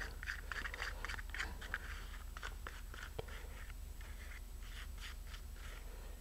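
A stirring tool scraping and ticking against the inside of a small container as it mixes water-thinned carpenter's wood filler paste. The scrapes are soft and irregular, busiest in the first few seconds and thinning out later.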